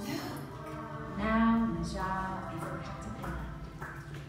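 Voices held in sustained, pitched vocal tones as part of a voice-made soundtrack, the loudest swell a little over a second in.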